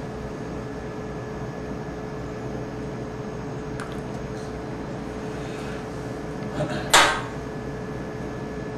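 Steady equipment hum with a constant mid-pitched tone, a few faint ticks, and one brief, sharp rustle or clatter about seven seconds in.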